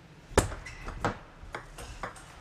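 Table tennis ball clicking: one sharp click about a third of a second in, then several lighter, irregular taps.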